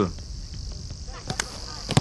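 Soccer ball struck by players' feet in a passing drill: two sharp kicks close together a little past one second in, and another near the end. Under them runs a steady high chirring of insects.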